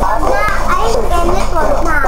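Young children's high-pitched voices, several at once.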